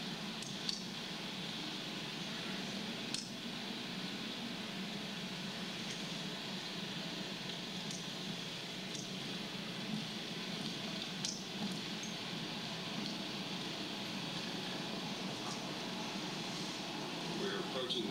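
Steady driving noise inside a car, played back from a videotape over courtroom speakers, with a few faint clicks.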